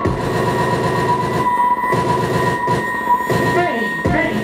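Live experimental electronic noise music: a dense, distorted wall of sound with a steady high drone held over it and a pulsing layered texture beneath, with a few falling swoops near the end.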